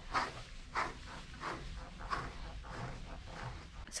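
A slicker brush raked through a Great Pyrenees–St. Bernard mix's thick coat in regular strokes, about one and a half a second.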